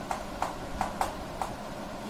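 Chalk writing on a blackboard: about five sharp taps of the chalk against the board.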